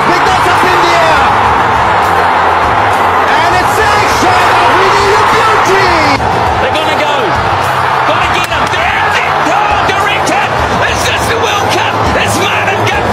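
Excited TV cricket commentary over a loud, roaring stadium crowd, with background music underneath.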